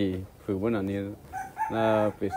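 A rooster crows about a second and a half in, over a man's low voice talking.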